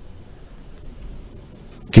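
A pause in a man's speech: low, steady background hiss of a studio microphone, with his voice starting again at the very end.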